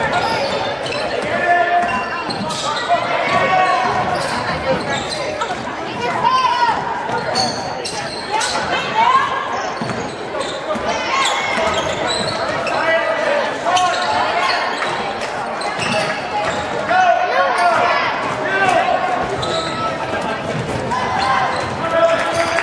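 Basketball dribbled on a hardwood gym floor during play, amid the voices of players and spectators in the gym.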